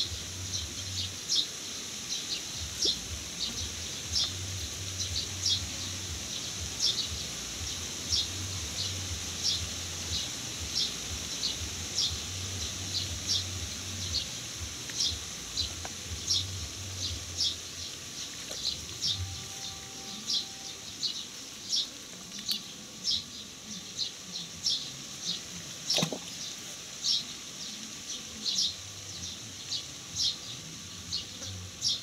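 A bird repeating a short, high chirp over and over, about once a second, with a low rumble underneath for the first half and one sharp click near the end.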